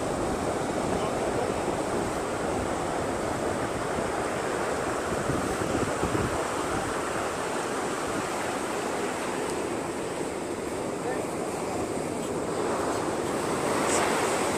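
Ocean surf breaking and washing up a sandy beach, a steady rushing noise, with wind on the microphone.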